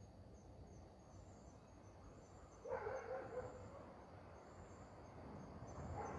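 Crickets chirping in a faint, high, pulsing trill at night. About halfway through, a louder sound starts suddenly and fades over a second or so.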